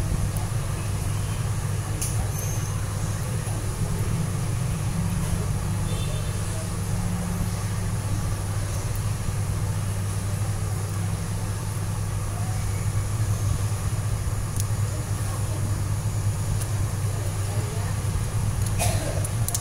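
A steady low hum runs underneath, with a few faint, short clicks of metal tweezers working on a phone's circuit board and parts.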